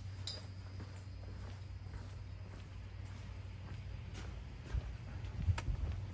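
Footsteps on a concrete floor over a steady low hum, with a few light knocks near the end.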